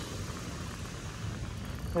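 Steady rushing of surf breaking on the shingle beach, mixed with wind on the microphone.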